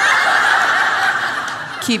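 A large audience laughing in a hall, loudest at first and dying down over about two seconds.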